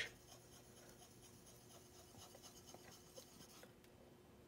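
Faint scraping of a skew chisel's edge stroked back and forth on a fine 8000-grit water stone, honing the edge. The strokes stop shortly before the end.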